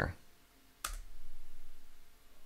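A single keystroke on a computer keyboard, the Enter key being pressed, heard as one sharp click a little under a second in and followed by a faint low hum.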